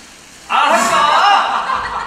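An actor laughing and chuckling loudly, starting about half a second in after a brief hush.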